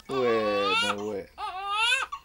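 A baby yelling on request: two long, rising cries, the second starting about one and a half seconds in.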